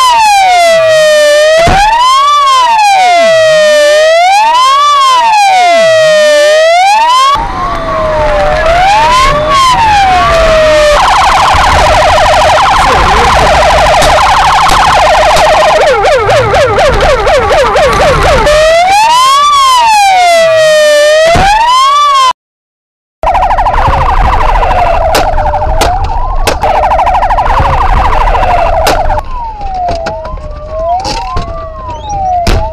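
Police car siren sounding loudly: a slow wail rising and falling about every two seconds, switching partway through to a fast warble and quick repeated yelps, then back to the wail. After a brief dropout the fast warble continues, with a few sharp knocks.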